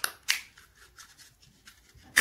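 Clear plastic clamshell case of a laptop RAM stick being pried open by hand: a sharp plastic click about a third of a second in, then smaller clicks and crackles of the plastic.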